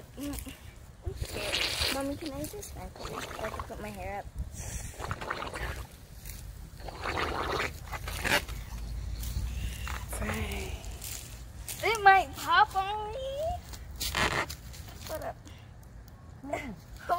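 Several short breaths blown hard into a giant water balloon, with children's voices calling out around them.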